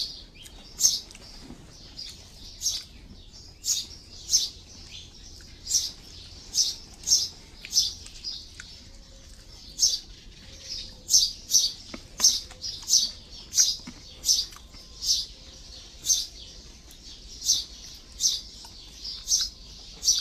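A small bird chirping over and over: short high chirps, roughly one or two a second at an uneven pace.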